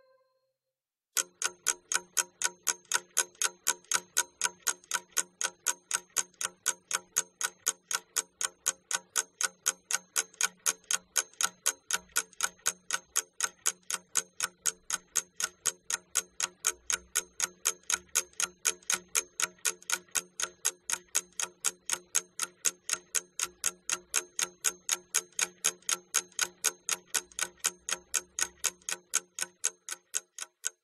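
Ticking clock sound effect, a steady tick about three times a second that starts about a second in: a timer counting down the time to do a task.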